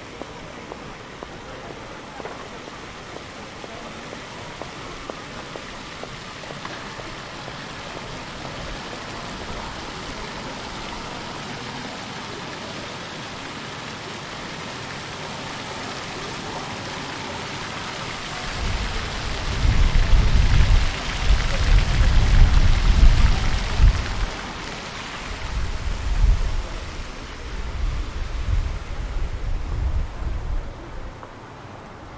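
Splashing water from rows of ground-level fountain jets hitting paving stones, a steady hiss that grows louder and peaks a little past the middle. From about two-thirds of the way in, deep, irregular rumbling gusts of wind buffet the microphone and are the loudest sound.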